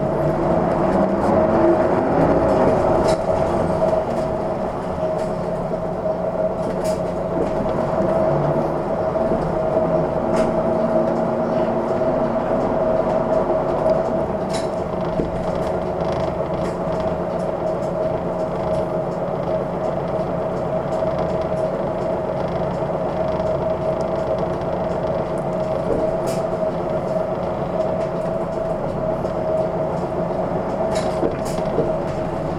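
Cabin sound of a Hino Blue Ribbon II city bus with its diesel engine and drivetrain running, a steady high whine over the engine note. The engine pitch climbs over the first few seconds as the bus drives on, then settles to a steady running note.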